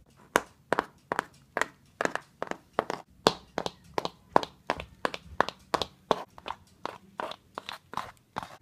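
Hooves of a plastic Schleich toy horse tapped on a wooden floor to imitate a horse walking: a steady run of sharp taps, about two to three a second, some of them doubled.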